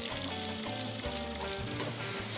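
Olives, salami, onions and chilli frying with freshly added sauce in a hot aluminium frying pan, sizzling steadily.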